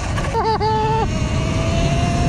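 Sur Ron electric dirt bike in sport mode riding a dirt path: a thin electric-motor whine, rising slightly in pitch from about a second in, over wind noise and tyres rolling on dirt. A brief held pitched tone comes about half a second in.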